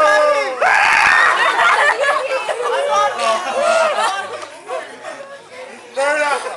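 A group of people making pterodactyl screeches: overlapping squawking, swooping voice cries with laughter among them, and one loud harsh screech about a second in.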